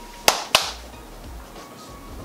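Two sharp taps about a quarter second apart, then faint background music.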